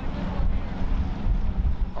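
Wind buffeting the microphone with a steady low rumble, over the low idle of a boat's 250 outboard motor as the boat comes in at slow speed.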